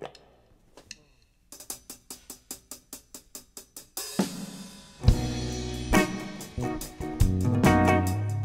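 A drum kit opens a song with quick, even hi-hat ticks, about five a second. A cymbal crash comes at about four seconds. About a second later the full trio comes in: drums, bass and electric guitar playing together.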